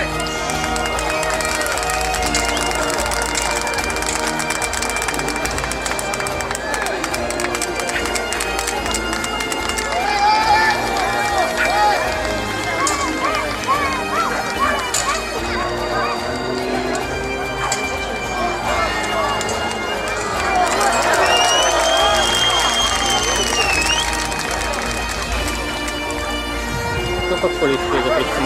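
Bagpipe music playing steadily, a sustained drone under the melody, with voices heard over it at times.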